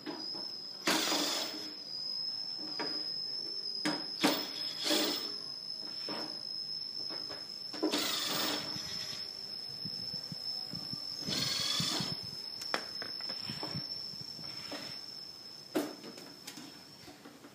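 Hand screwdriver turning out the screws of an old amplifier's sheet-metal cover, in several short squeaky, scraping bursts with a few clicks between them.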